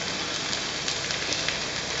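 Food frying in a pan: a steady sizzle with faint scattered crackles.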